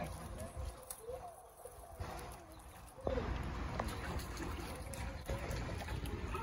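Water splashing and sloshing in a penguin pool as a penguin swims at the surface, getting suddenly louder and fuller about three seconds in. Faint voices sound in the background.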